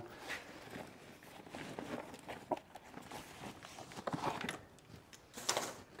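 Faint handling noises from a brass SWA cable gland and tools: soft scattered clicks, small knocks and rustling, with a few sharper clicks in the second half.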